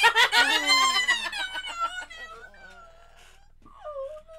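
Women shrieking and laughing in excited reaction. The outburst is loud for about two seconds, then trails off into quieter laughter, and near the end one voice gives a short, drawn-out whimper.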